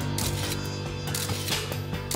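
Camera sound effect: a run of mechanical clicks and ratcheting, like a shutter and film advance, over a steady low music drone.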